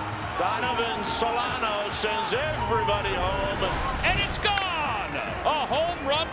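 Broadcast commentary voice over background music.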